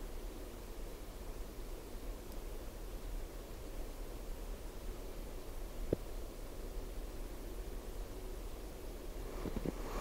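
Quiet outdoor ambience: a steady hiss with a faint constant low hum underneath, and a single short click about six seconds in.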